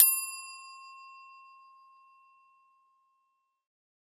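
A single bright bell ding, struck once and ringing out over about two and a half seconds. It is the sound effect that goes with a subscribe button being clicked.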